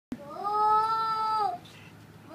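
A toddler's single long vocal call, held for about a second and a half, rising at the start and dipping away at the end.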